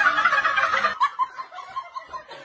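A high-pitched, rapidly fluttering cackling laugh that stops about a second in, followed by a few faint short sounds.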